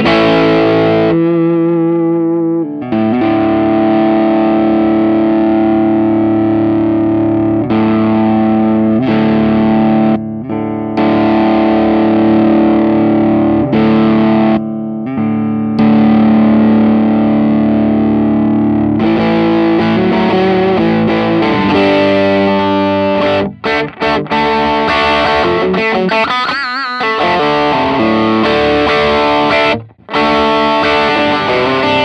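Electric guitar played through a Xotic BB Preamp overdrive pedal: sustained overdriven chords and notes with a few short breaks. The tone changes and gets brighter about two-thirds of the way in, after the pedal's knobs are turned.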